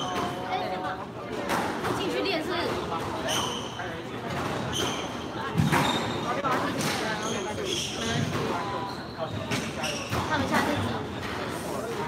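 Squash rally: the ball cracks off rackets and the court walls again and again, and shoes squeak on the wooden floor, with voices chattering in the background.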